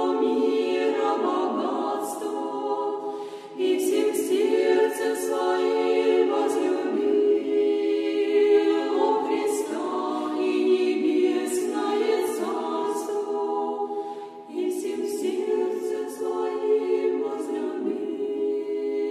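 Women's choir of a Russian Orthodox convent singing a cappella in sustained, full chords, with short breaks between phrases about three and a half and fourteen and a half seconds in.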